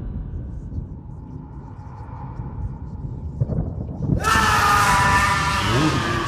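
A low rumble, then about four seconds in a sudden, loud, harsh scream that lasts about two seconds.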